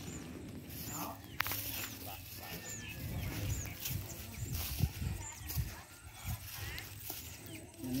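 Small birds chirping: short high calls repeated about once or twice a second, over low voices and a few dull thumps.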